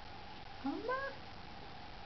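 A small child's single short rising call, meow-like, lasting about half a second.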